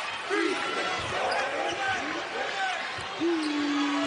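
Arena sound of a college basketball game in play: sneakers squeaking on the hardwood court and a ball being dribbled, over crowd noise. About three seconds in, a steady low held tone begins and carries on.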